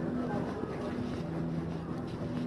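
Street traffic noise with a vehicle engine running steadily, its low hum holding a few steady pitches.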